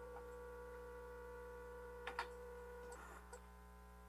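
Steady low electrical hum from the room's sound system, with a few faint clicks about two and three seconds in. A higher steady tone in the hum cuts off about three seconds in.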